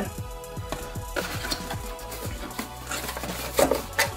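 Background music under the handling of a cardboard box and its foam packing: short taps, rustles and scrapes, with a louder scrape near the end.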